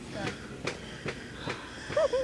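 Faint voices over the low hum of a store, with a few short clicks from a shopping cart rolling across the hard floor.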